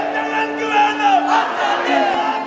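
A group of young men shouting a political slogan together, many voices overlapping with one long held shout.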